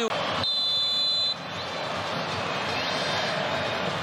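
A football referee's whistle blown once, a steady shrill note of about a second, signalling the free kick to be taken. It sounds over the steady noise of a large stadium crowd.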